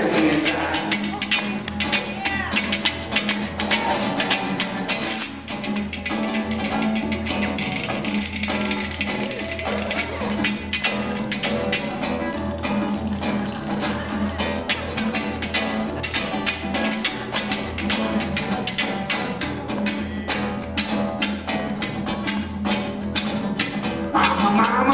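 Acoustic guitar strumming an instrumental break while a second player does the hand jive, slapping and clapping his hands, chest and thighs in a fast, steady rhythm.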